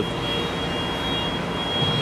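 Steady background machine noise with a thin, high, steady whine over it.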